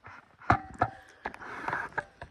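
Handling noise from a phone camera being moved: two sharp knocks about half a second apart, a few lighter clicks, then scuffing and rubbing.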